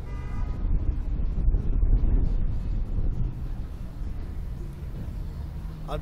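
Low, uneven rumble of wind on the microphone of a ride-mounted camera, strongest about two seconds in.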